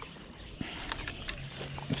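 A man's low, steady hum lasting about half a second near the end, with a few faint clicks and rustles from the fish and landing net being handled.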